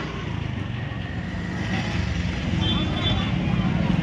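JCB backhoe loader's diesel engine running steadily close by, growing gradually louder.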